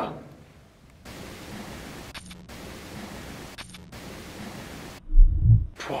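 Steady hiss that starts about a second in and cuts off abruptly, with two faint brief sounds in it, followed about five seconds in by a loud, short, low thump and rumble of the camera being handled as it swings round.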